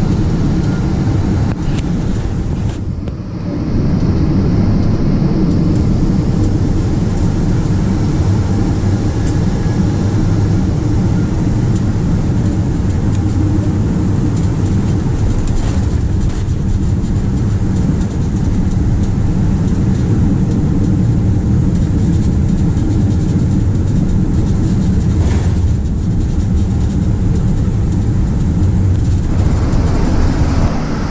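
Inside the cabin of a Boeing 777-200ER landing: a steady low rumble of engines and airflow through the final approach, touchdown and runway rollout, dipping briefly about three seconds in.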